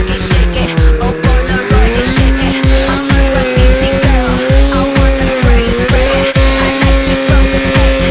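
A steady kick-drum beat of electronic dance music plays over a snowmobile engine's drone, whose pitch wavers up and down with the throttle as the sled rides through deep powder.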